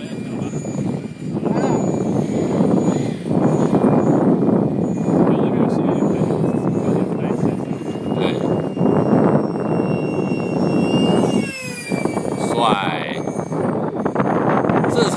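Electric ducted-fan model jet (E-flite Habu) flying, a thin high whine that slides down in pitch about eleven seconds in as the jet passes. Heavy wind buffeting on the microphone is heard under it.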